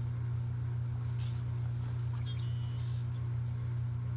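A steady low hum, with a faint rustle about a second in as a book page is turned.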